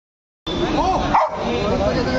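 A golden retriever barks once, loudly, about a second in, over people talking.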